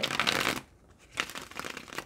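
A tarot deck shuffled by hand: a fluttering rush of cards in the first half-second, then a second bout from just past a second in.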